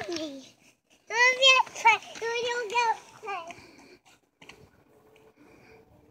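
A young child's high-pitched voice babbling and calling out in a sing-song way, without clear words, for about two seconds starting a second in; it goes quiet after that.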